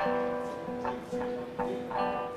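A guitar through the stage sound system playing a few slow plucked notes that ring on, a new note about every half second.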